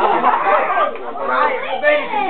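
Several people talking over one another, with laughter.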